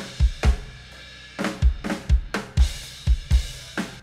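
Multitracked acoustic drum kit recording played back: kick drum hits, often in pairs, under snare and cymbal wash, stopping just before the end. It is a section at a transition between takes that the editor reckons is probably fine.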